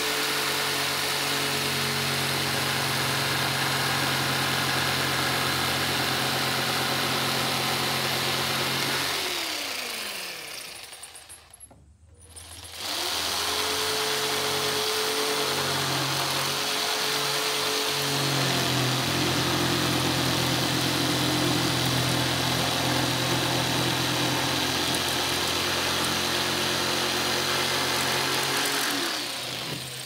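Black & Decker corded jigsaw cutting into a glued-up wooden cutting board: a steady motor whine with blade chatter. It winds down and stops about a third of the way in, starts again a few seconds later, and winds down once more near the end.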